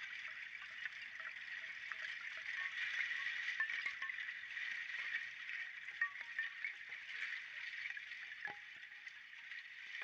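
Ice chiming in flowing river water during spring breakup: a steady wash of many small tinkles and clicks.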